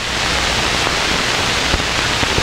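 A steady, even rush of pouring water: hot water poured over birchbark to keep it from splitting as it is bent up.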